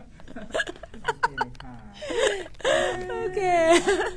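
Women laughing: short choppy bursts of laughter at first, then a longer high-pitched drawn-out laugh in the last second or so.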